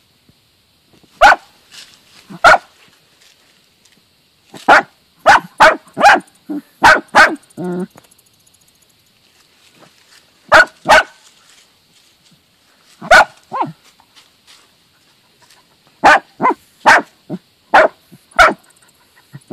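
Dachshunds barking at a mole in its burrow: short, sharp barks in uneven bursts of one to four, with quiet gaps between.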